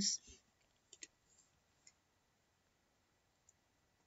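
A few faint computer mouse clicks over near silence: a quick double click about a second in, then single clicks near two seconds and three and a half seconds in.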